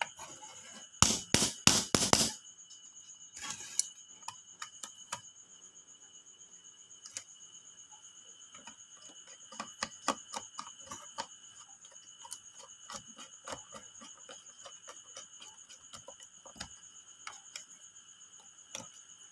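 Screwdriver working the terminal screws of a dual-power automatic transfer switch: scattered small clicks and ticks of the tool on the screws and the plastic housing. About a second in there is a short, loud cluster of knocks and rattles, and a smaller one a couple of seconds later.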